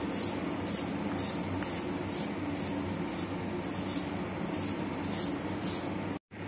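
Vegetable peeler scraping the skin off a raw potato in quick strokes, a short rasping hiss about twice a second.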